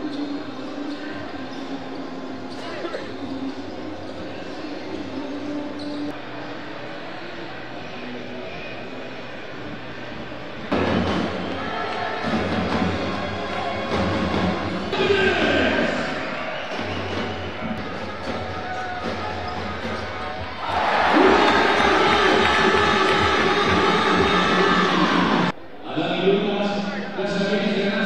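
Basketballs bouncing on a hardwood court in a large arena, over crowd chatter and music; the sound steps up in loudness about eleven seconds in and again near twenty-one seconds.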